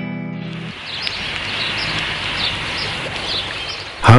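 A held music chord fades out in the first half-second. It gives way to outdoor ambience: a steady hiss with small birds chirping in short, high calls several times a second.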